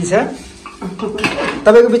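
Metal spoon clinking and scraping against a stainless steel pressure cooker and steel bowl as cooked mutton is served out.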